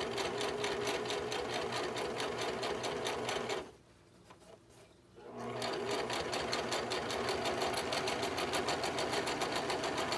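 Simplicity sewing machine stitching a seam along the edge of a fabric hat brim, with a fast, even stitch rhythm. It stops about three and a half seconds in and starts again about a second and a half later.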